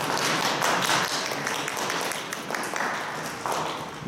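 Audience applauding: many hands clapping at once, a dense patter that eases slightly near the end.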